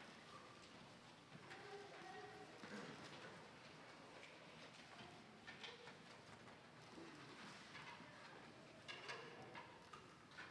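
Near silence as a school concert band's percussion-heavy piece fades out: faint scattered taps and clicks, with a few short soft tones.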